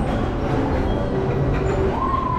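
Carousel turning: a steady, dense rumble from the rotating platform and its drive machinery.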